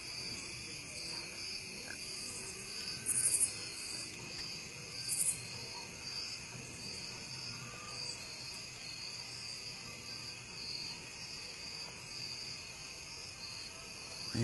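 Steady high-pitched insect chirring, with a fast pulsing upper note. Two brief, louder, very high chirps come about three and five seconds in.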